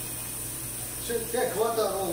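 Steady low electrical hum with a faint hiss from the running steam autoclave machinery. A man starts talking about a second in.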